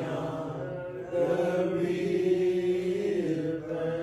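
Slow hymn singing in church, the voices drawing out long held notes one after another.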